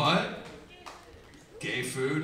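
Brief speech with no clear words: a voice at the start and again near the end, with a quieter gap between.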